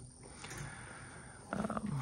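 Faint room tone, then about one and a half seconds in a single pitched livestock call starts.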